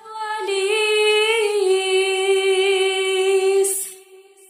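A single long sung note, held steady for about three and a half seconds after a slight waver in the first second, ending in a short hiss: a radio station jingle opening the break.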